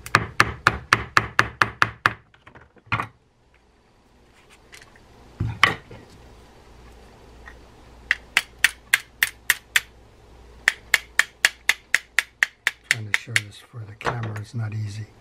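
Dead blow hammer tapping the handle pin back into a D.A.M. Quick 441N spinning reel, seating the pin. The taps come in quick runs of about five a second: one burst at the start, two single knocks, then two longer runs near the end.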